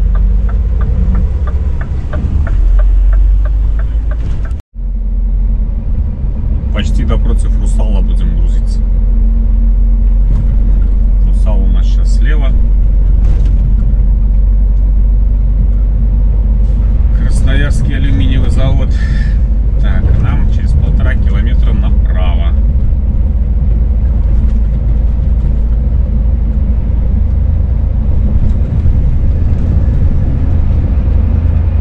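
Scania S500 truck driving, heard from inside the cab: a steady low engine and road rumble. It drops out sharply for a moment about five seconds in.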